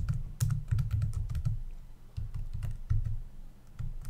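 Typing on a computer keyboard: a quick, irregular run of keystrokes while a line of code is entered.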